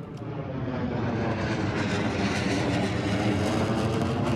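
B-2 Spirit stealth bomber flying overhead: the rushing noise of its four turbofan engines swells over about the first second, then holds steady.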